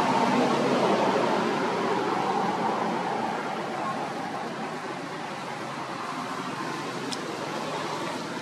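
Steady background noise with no clear single source, louder for the first few seconds and then easing off, with a faint click near the end.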